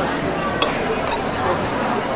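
Dining-room ambience: a steady hum of background chatter, with a single clink of tableware a little over half a second in.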